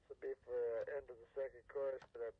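Spoken intro at the start of a rock record playing back: a man's voice talking, as if to a producer, thin and tinny like a phone line.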